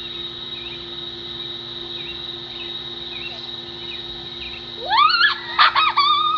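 A person's loud, high-pitched yell that sweeps up in pitch about five seconds in. Before it there is a steady background hum with a faint high whine and faint distant voices.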